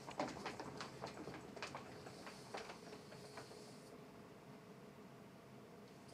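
Faint clicks and taps of a manual wheelchair being pushed away across a hardwood floor, thinning out after the first few seconds, over a faint steady hum.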